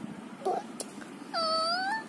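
A toddler's high-pitched wordless vocal sound: a short call about half a second in, then one longer call just past the middle that dips in pitch and then rises.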